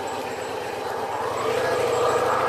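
A motor vehicle's engine with a steady drone, growing louder about a second and a half in as it comes closer.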